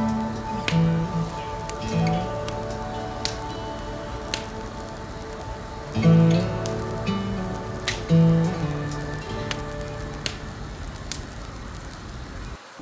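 Soft background music, with irregular sharp crackles and pops from split firewood burning in a wood stove.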